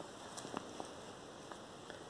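Faint handling noise: a few soft ticks and light rustling as a finger moves over a paper sheet, over quiet room tone.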